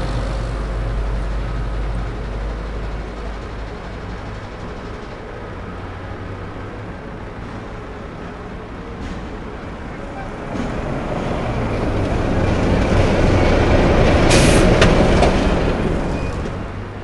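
Articulated lorry with a low-loader trailer running past, its engine rumble growing louder from about ten seconds in, with a short hiss near the end.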